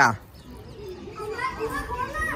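Faint voices of children a distance away, starting about a second in, after the close speech stops.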